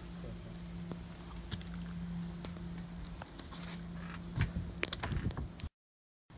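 A steady low hum runs under scattered light clicks. A cluster of knocks and rustles near the end comes from the recording phone being handled, and then the sound cuts out.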